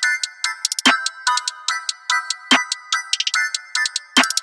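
Trap instrumental beat: a bell-like melody over rapid hi-hat rolls, with a heavier snare or clap hit landing twice. There is no deep bass under it.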